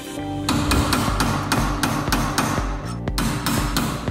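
A quick run of hammer blows on metal, starting about half a second in, over background music with a steady beat.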